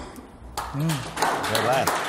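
Hand clapping starts about half a second in, after the singing has stopped, with voices talking over it.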